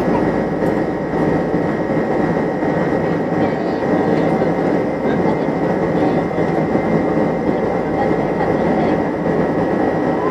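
Boeing 747 cabin noise during the climb after takeoff: the jet engines and the rushing airflow make a steady, unbroken noise, with a faint steady high tone over it.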